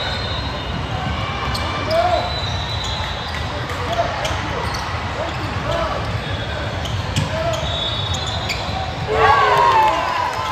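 Live basketball game sound in a large echoing hall: a ball dribbling on a hardwood court, short sneaker squeaks, and players and spectators calling out, with a louder call near the end.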